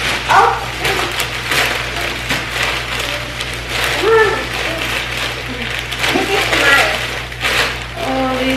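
Plastic poly mailer bag crinkling and rustling as it is handled, a dense run of small crackles, with a few short bits of voice in between.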